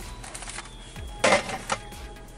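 Plastic dashboard trim bezel being set down: a short clatter about a second in, then a lighter knock just after.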